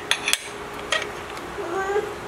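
Small steel shackle clinking against the eye of a digital hanging scale as it is fitted by hand: a few sharp metallic clicks with a short ring in the first second.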